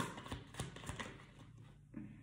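A tarot deck being shuffled by hand: a run of quick, soft card clicks that thins out and fades after about a second. One more snap comes near the end.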